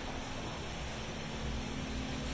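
Steady room background noise: an even hiss with a faint constant hum, and no sudden sounds.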